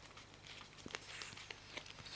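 Faint handling of sleeved trading cards, with soft rustling and a few light clicks as they are flicked through in the hands.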